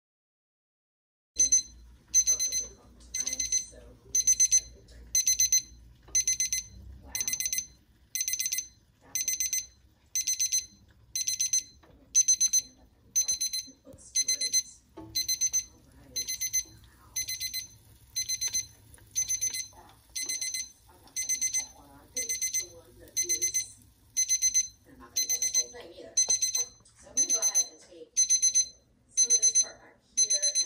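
Wireless meat thermometer alarm beeping about once a second, each beep a quick rapid-fire cluster of high electronic tones: the probe in the steak has reached the set target temperature.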